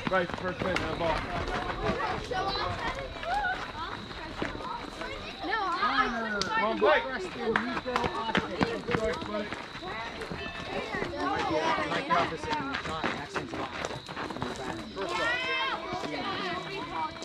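Several children and adults talking and calling out at once, with scattered clicks and knocks and a faint steady high tone underneath.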